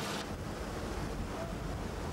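A steady, toneless rumbling noise, heaviest in the low end, with a brief brighter burst right at the start.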